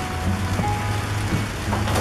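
Salt shaken from a small container onto raw diced meat in a steel tray, a light pattering, over steady background music.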